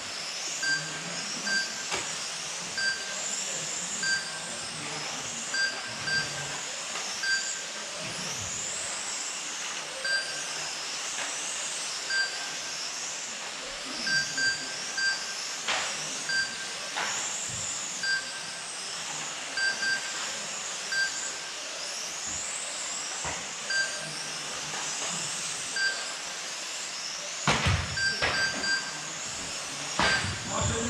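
Several 1/12-scale electric radio-controlled racing cars running laps: a high-pitched motor whine that rises and falls as they accelerate and brake, over a steady hiss. Short electronic beeps from the lap-timing system sound at irregular intervals, singly and in quick pairs, as cars cross the line. A few sharp knocks are heard, the loudest about two seconds before the end.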